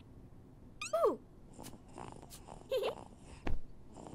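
Two short, squeaky cartoon vocal calls that slide down in pitch, the first about a second in and the second near three seconds, then a soft knock just after.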